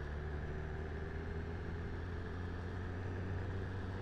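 BMW S1000RR inline-four engine running steadily at a cruise, with an even rush of wind and road noise.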